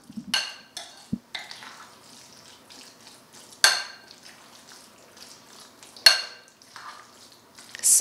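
A spoon mixing chicken salad in a glass bowl, clinking against the bowl's side now and then, with two louder ringing clinks about three and a half and six seconds in.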